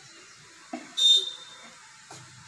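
A clear plastic bottle knocks on stone floor tiles, then gives a short, sharp high-pitched squeak as it scrapes across them.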